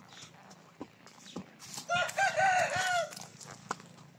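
A rooster crowing once, a call of about a second made of a few wavering notes, starting about two seconds in.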